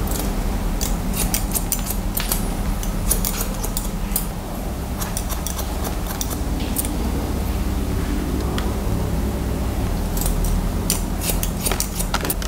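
Barber's scissors snipping through sections of hair held between the fingers (club cutting), a run of short crisp snips that comes in clusters, busiest in the first few seconds and again near the end.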